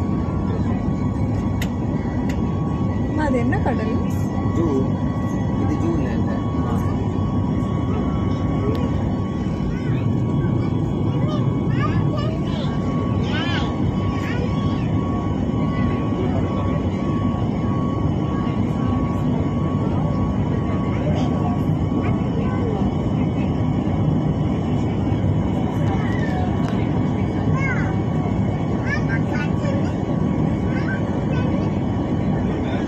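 Airliner cabin noise during the climb after take-off: the steady rush of engines and airflow heard from inside the passenger cabin, with a faint steady high whine over it.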